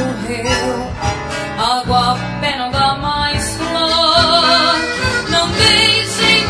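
A milonga: a young girl's voice singing, with guitar accompaniment, holding a wavering note near the end.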